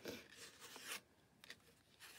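Faint rustling and rubbing of card stock being bent and smoothed by hand, with a couple of soft paper ticks, mostly in the first second.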